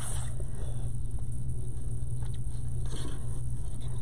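A steady low background hum, with faint rustling and crinkling of ribbon as it is pinched and twisted by hand.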